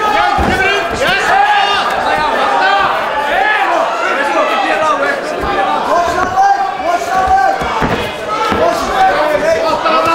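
Fight crowd and cornermen shouting during an MMA bout: many overlapping voices calling out at once, with a few short thuds.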